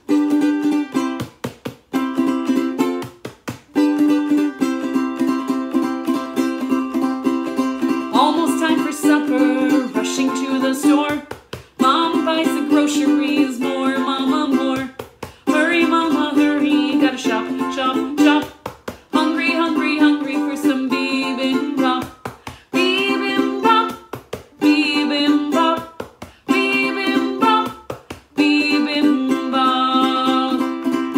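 A ukulele strummed in a steady rhythm of chords, broken by short pauses. About eight seconds in, a woman starts singing over it.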